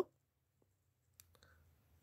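Near silence broken by a few faint clicks a little past the middle.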